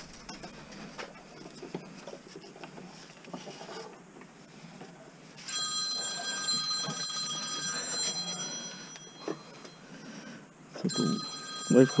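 Smartphone ringtone ringing for an incoming call. It starts about halfway through, breaks off for a couple of seconds, then rings again near the end. Before it, faint clicks and clinks of hands handling scrap.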